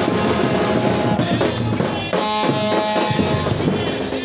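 Loud drumming with many quick beats over a cheering crowd. Held musical notes join about halfway through.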